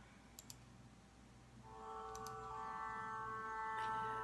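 A few faint clicks, then a quiet, steady drone note rich in overtones fades in about a second and a half in and holds, the accompaniment that the mantra chant then sings over.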